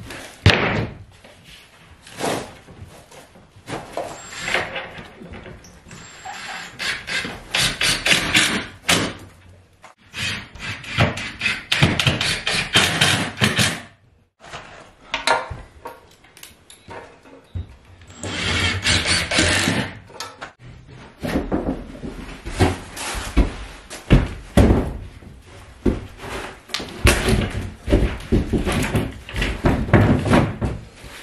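OSB sheets being handled and fitted against wooden knee-wall framing: a run of irregular thumps and knocks, with stretches of scraping and rubbing as the boards are shifted into place.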